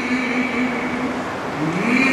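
A man's voice chanting, holding one long low note, then sliding up in pitch near the end into the next phrase, over a steady hiss.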